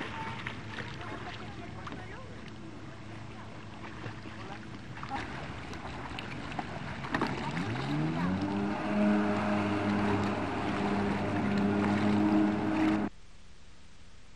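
Jet ski engine rising in pitch as it speeds up about halfway through, then running steadily at high revs. The sound cuts off abruptly about a second before the end, leaving a low hiss.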